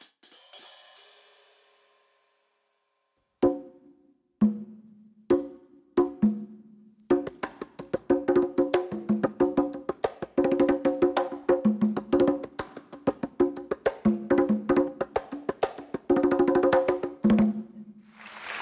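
A pair of conga drums played by hand: a few separate strokes, then from about seven seconds in a quick, steady drumming rhythm.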